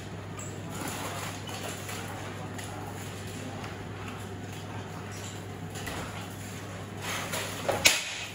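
Armoured fighters shuffling and stepping on a hard floor with faint knocks of armour and shield over a steady hum, then a single sharp, loud crack near the end, typical of a rattan sword striking a shield or armour in SCA heavy combat.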